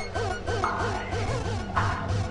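Electronic music: a pulsing bass under a repeating figure of short synth notes that bend up and down in pitch, about four a second, with a hoot-like tone.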